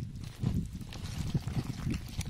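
Hands squeezing and rubbing a wet chopped spice paste into split raw eels on a banana leaf: soft, irregular squelches and smacks.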